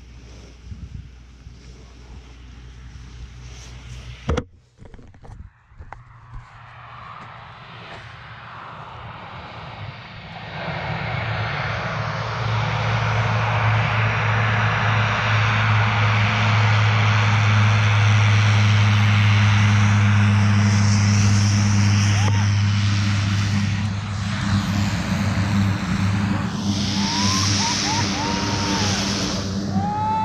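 Propeller aircraft engine running, a steady drone that comes up loud about ten seconds in and holds. A single sharp knock sounds about four seconds in.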